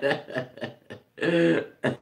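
A man laughing: a quick run of short, breathy bursts, then a longer voiced laugh about halfway through.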